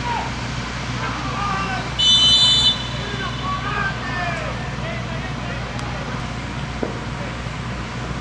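A referee's whistle blown once for a foul, a short high shrill blast about two seconds in, the loudest sound here, over scattered shouting voices from the pitch and stands.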